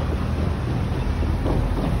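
Wind buffeting the phone's microphone as a steady low rumble, mixed with the noise of city street traffic.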